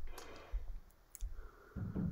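Faint, scattered clicks and light low knocks, a couple of sharp clicks among soft thumps.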